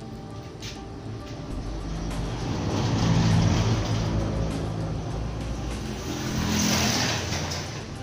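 A motor vehicle passing by, its rumble swelling to a peak about three seconds in and fading, with a second hissing swell near the end, over background music.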